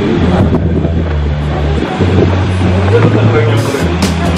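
Background music with a bass line of held notes that change every second or two, and a voice over it.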